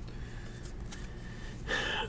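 Quiet room with faint handling of a thick stack of trading cards, then a short breathy in-breath near the end, just before speaking.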